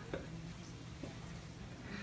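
Faint handling noise as a plush toy is lifted and set on top of a head: a few soft clicks over a low steady hum.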